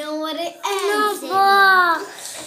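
A young child's voice singing out long drawn-out notes with no clear words, the last note the loudest, held for most of a second and arching up and down in pitch.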